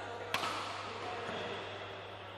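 A badminton racket striking the shuttlecock once, a sharp crack about a third of a second in that rings on in the sports hall's echo, over a steady low hum.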